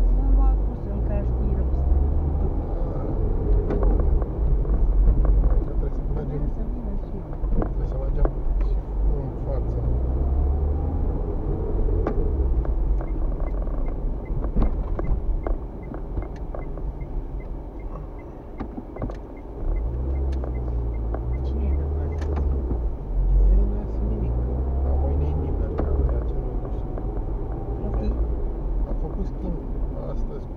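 Engine and road rumble inside a moving car's cabin. It eases off near the middle as the car slows at a junction, then picks up again. Shortly before it slows, a turn signal ticks evenly for a few seconds.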